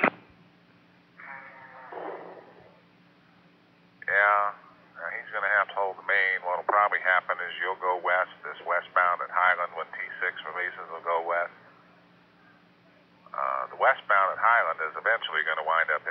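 Voice transmissions over a two-way railroad radio, the speech too unclear to make out. A short burst of radio noise comes about a second in, then two stretches of talk with a pause between, over a steady low hum.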